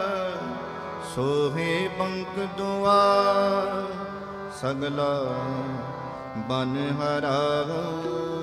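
Gurbani kirtan: sustained harmonium chords with a male voice singing a shabad in ornamented, gliding phrases, accompanied by tabla. The singing comes in phrases that swell and then fade back to the harmonium.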